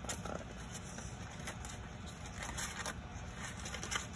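Faint, irregular rustling and light clicks of a paper banner of cardboard popsicle cut-outs on twine being handled as its pieces are counted, over a low steady background hum.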